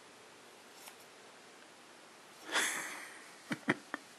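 Grooming scissors snipping hair around a dog's face. A brief rasping noise comes a little past halfway, then three quick, sharp snips near the end.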